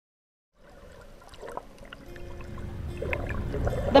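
Water sloshing and bubbling, fading in from silence about half a second in and growing steadily louder.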